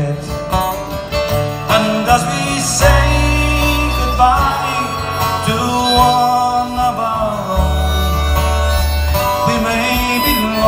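Instrumental break in a live Irish folk ballad: strummed acoustic guitars and a button accordion, with a harmonica carrying the melody over low sustained bass notes.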